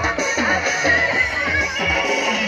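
Live Nagpuri folk music, instrumental at this moment: a hand-played barrel drum beats repeatedly, its low strokes gliding down in pitch, under a wavering high melody line.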